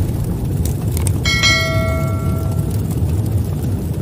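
Outro sound effects for a subscribe-button animation: a steady low rumble, faint clicks about half a second and a second in, then a bright bell ding a little over a second in that rings for over a second.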